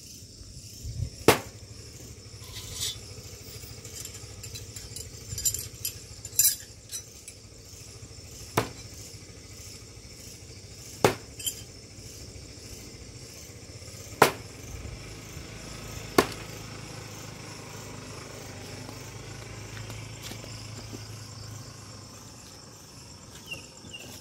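Throwing knives striking a wooden-block target: five loud sharp hits a few seconds apart, with a few fainter knocks between. Crickets chirp steadily throughout.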